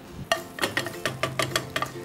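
Slotted spatula stirring and scrambling eggs with oats in a frying pan: a quick, irregular run of clicks and scrapes against the pan.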